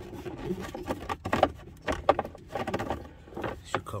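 Plastic cabin air filter cover and filter clicking, knocking and rubbing in their housing as the cover's corner tabs are pushed in and the filter is slid out. The sounds are a string of irregular clicks and scrapes, loudest about a second and a half in.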